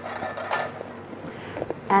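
Roasted butternut squash pieces pushed off a metal roasting tin with a wooden spoon and dropping into a stainless steel pan. There are two short scraping clatters, one at the start and one about half a second in.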